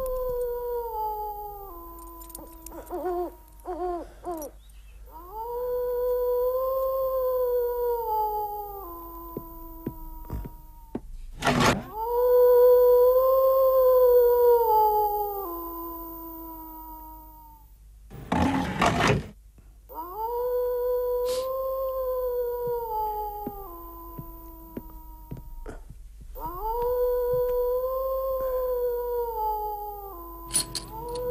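A wolf howling: five long howls, each rising and then sliding down in steps, about every six seconds. Two loud knocks break in between the howls, about a third of the way in and again a little after halfway.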